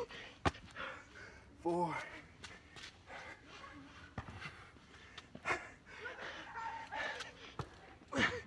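Heavy breathing and short grunts from a man working through a burpee, with a few sharp taps of hands and feet meeting the ground.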